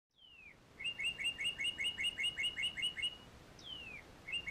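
A songbird singing: a single falling whistle, then a fast run of two-note chirps at about five a second, then another falling whistle near the end.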